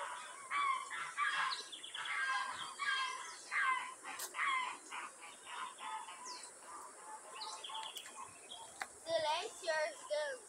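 Birds calling and chirping in the trees, busiest in the first few seconds, with a quick run of repeated calls near the end. A steady high hum sits underneath.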